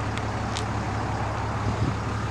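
A steady low mechanical hum with faint outdoor background noise.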